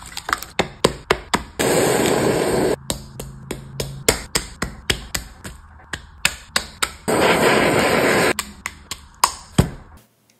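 Quick-cut kitchen prep sounds: a string of sharp taps and clicks of a wooden spatula in a glass bowl and food set down on a wooden cutting board. Twice a steady hiss cuts in for just over a second, about two seconds in and again about seven seconds in.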